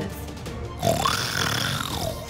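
Background music, joined about a second in by a cartoon lion's growl sound effect that lasts to the end.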